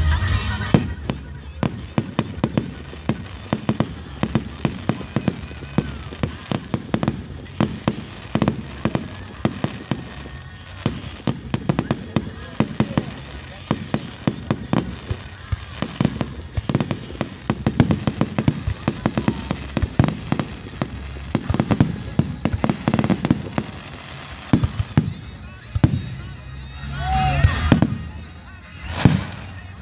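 Fireworks display: a rapid, nearly continuous run of bangs and crackles from aerial shells bursting, with a louder swell of sound shortly before the end.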